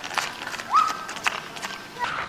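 Quick, irregular footsteps on brick paving, with a short rising tone that holds briefly a little under a second in.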